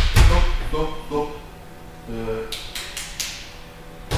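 Bodies and hands slapping onto wrestling mats in breakfall drills: one heavy thud at the start, then a quick run of four or five sharper slaps about two and a half to three seconds in. Short bursts of voices fall between them.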